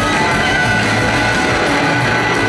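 Live blues-rock band playing loudly, with electric guitars, keyboards and drums, heard from out in the audience.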